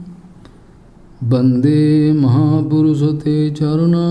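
A man chanting Sanskrit invocation prayers (mangalacharan) in a slow melodic recitation on long held notes. It breaks off for about a second between verses, then resumes with the next line.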